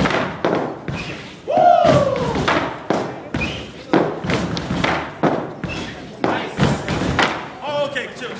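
Step team's rhythmic stomps and cane strikes on a stage, hitting about twice a second, with a loud shouted call falling in pitch about one and a half seconds in.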